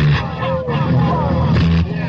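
Dancehall deejay chanting on the microphone over a heavy reggae bass line, from a live 1982 sound-system dance recording.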